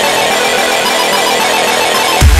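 Electronic music: a loud, buzzing synth passage with an even pulse and no bass. The deep bass of the dubstep track is missing here and returns just after.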